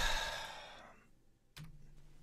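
A person's heavy sigh close to the microphone: a noisy breath out that starts sharply and fades away over about a second. About a second and a half in there is a click, followed by a low hum.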